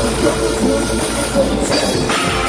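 Heavy metal band playing live at loud, steady volume, a dense wash of distorted electric guitar.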